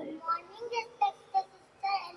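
A young girl's voice through a microphone: a few short syllables with brief pauses between them.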